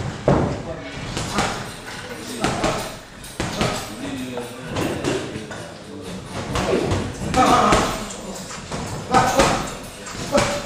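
Boxing gloves thudding in sparring: punches land at irregular intervals on body and headgear, with shuffling steps on the ring canvas and people's voices in the gym.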